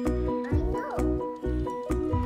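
An electronic touch-and-learn activity desk playing a recorded cat meow through its small speaker, over its own electronic tune with a repeating bass note. The meow comes about half a second in.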